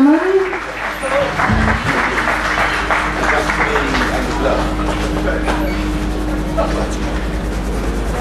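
Audience applause with chatter as a live band's song ends, the singer's last sung note dying away in the first half second. A steady low hum and a held low tone run under the clapping.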